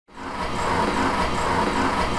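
Wide-format inkjet printer running: a steady mechanical whir with a rhythmic pulse about twice a second.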